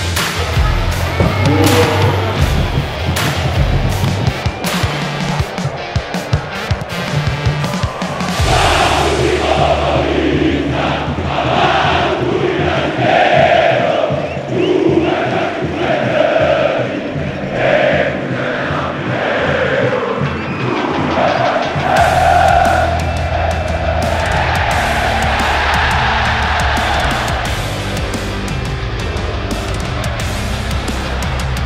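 Music with a heavy beat, joined through the middle stretch by a large football crowd singing a rhythmic chant in unison.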